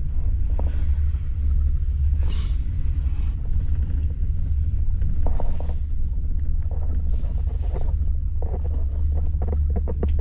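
Gondola cabin riding up the line: a steady low rumble, with scattered brief creaks and knocks and a run of quick ticks near the end.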